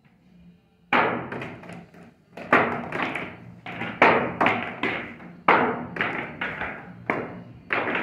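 A pool cue striking into a tight rack of billiard balls about a second in, a sharp clack. It is followed by a long run of clacks and knocks, several a second, as the balls hit each other and the cushions and drop into the pockets.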